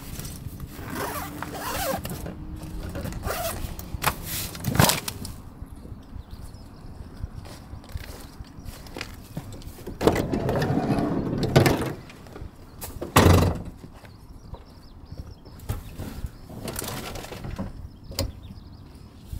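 Rustling and a few knocks of storage boxes being shifted in a van's cargo area, then a Renault Kangoo's sliding side door is unlatched and rolled open, ending about three seconds later in a loud thump as it reaches the end of its travel.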